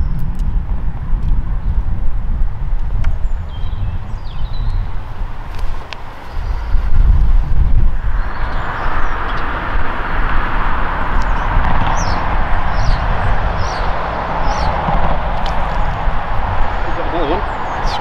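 Outdoor wind noise rumbling on the microphone. About eight seconds in, a steady rushing noise sets in and holds, with a few short high chirps near the middle.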